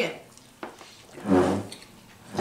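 A person's short hummed 'mm' while tasting food, about a second and a half in, with a faint tick shortly before it.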